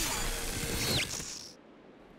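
Cartoon magic transformation sound effect: a shimmering, sparkling whoosh with a quick downward sweep about a second in, fading out about a second and a half in. It marks a superhero's transformation wearing off.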